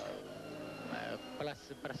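A man speaking Portuguese, holding a long drawn-out hesitation sound for about a second before speech picks up again near the end.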